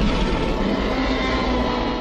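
Roar of a film Tyrannosaurus rex, a loud, rough cry with a deep rumble, bursting in suddenly and held for about two seconds.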